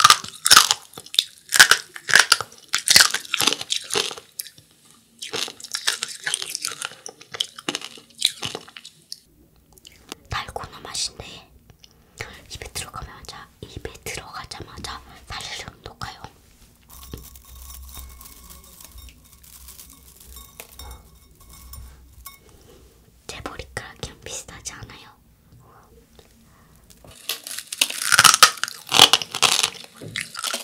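Close-miked biting and chewing of brittle spun-sugar angel-hair candy: dense, crisp crackling crunches, loudest near the start and again near the end, with softer chewing in between.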